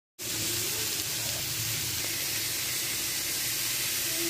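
Sliced red onions and tomato sizzling in a hot metal pot, a steady, even hiss.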